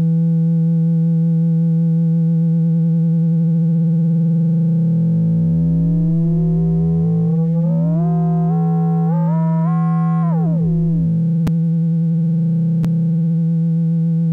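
A sustained synthesizer note from UVI Falcon's wavetable oscillator playing a single-cycle sine, frequency-modulated by its FM sine as the FM frequency is raised. Extra tones glide out from the note and climb in steps, then drop back about eleven seconds in. Two faint clicks come near the end.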